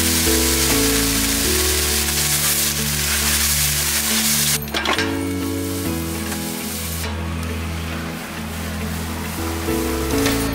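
Water sizzling on a hot flat iron dosa griddle, a dense hiss that cuts off abruptly about four and a half seconds in, as the griddle is readied for batter. Background music with steady low notes plays throughout.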